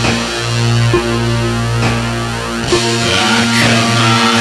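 Rock music with distorted electric guitar and bass holding sustained chords that change about once a second.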